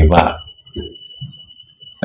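A man's voice giving a sermon breaks off within the first half second, leaving a pause of about a second and a half before speech resumes at the end. Faint steady high-pitched tones run under the voice and through the pause.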